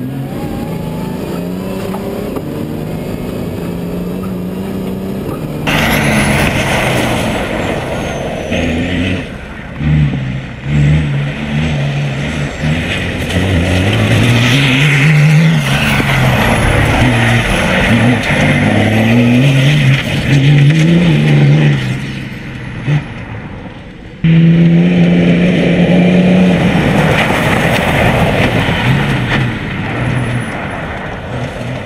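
Off-road rally prototype's engine, heard first from the cabin at a fairly steady pitch, then from outside, louder, with the revs rising and falling again and again as it accelerates along a gravel track, over a rushing noise of tyres and gravel. Near the end it runs loud and steady.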